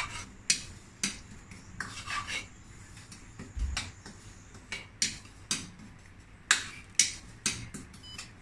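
A spoon scraping and tapping against a pan as sesame seeds are stirred while they dry-roast with no oil or water, in irregular strokes about every half second.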